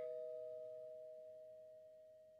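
A chime struck just before this rings on as two steady tones and slowly dies away. No new strike comes.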